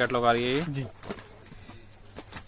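A man's voice draws out one syllable in the first second, then trails off, leaving a faint low hum.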